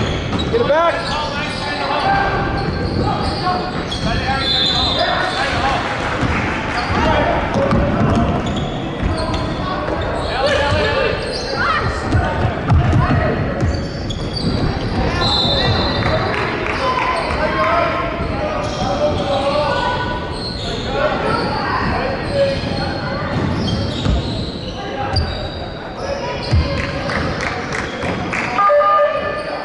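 Basketball bouncing on a hardwood court during play, with voices calling out, all echoing in a large gym hall.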